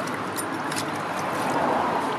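Shallow brook water sloshing and splashing as a gloved hand rakes debris out from under a fallen log, over the steady running of the stream.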